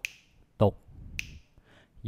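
Finger snaps keeping a steady beat, two crisp snaps about 1.2 seconds apart, between spoken rhythm syllables.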